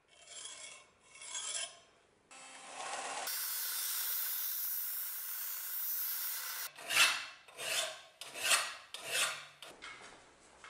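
Two short scraping strokes, then a belt and disc sander grinding the steel cleaver blade at a steady level for about three seconds, cutting off suddenly. Four short, louder abrasive strokes follow, about 0.7 s apart.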